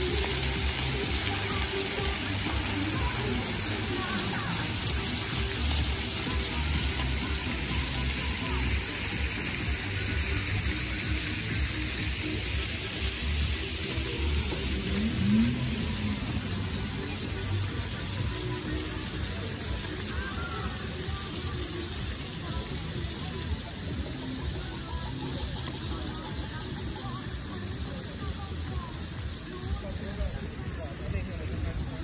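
Outdoor ambience of a splash fountain's water jets, with music and voices from a stage and people's chatter around; the level eases a little in the second half.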